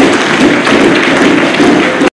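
Loud applause from a seated audience: a dense, steady clatter of many hands clapping.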